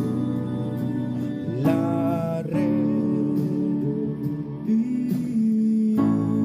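Yamaha digital piano playing sustained chords in D major, with a voice singing a short wavering phrase about two seconds in. A new chord is struck near the end.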